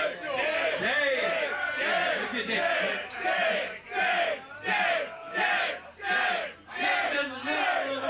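A crowd of audience members shouting a chant together in a steady rhythm, many voices rising and falling at once.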